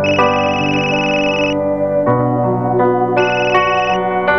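A mobile phone's ringtone playing a melody over soft background music; the ringtone breaks off after about a second and a half and starts again near the end.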